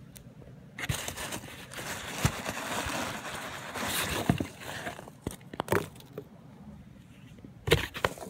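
Polystyrene packing peanuts rustling and crunching as a hand digs through them, followed by a few sharp knocks, the loudest near the end.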